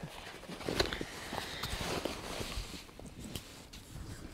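Rummaging in a fabric bag: cloth rustling with scattered soft clicks and knocks, busiest in the first two seconds and fading toward the end.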